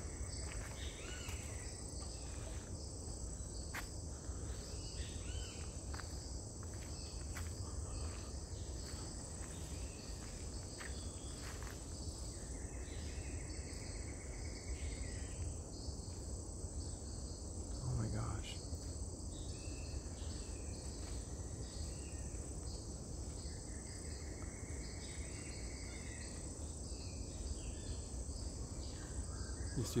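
Steady high-pitched drone of a rainforest insect chorus, with two longer buzzes of about three seconds each joining in midway and near the end. A single brief louder sound about eighteen seconds in.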